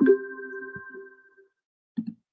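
A chime: a few clear tones struck together, ringing and fading out over about a second and a half.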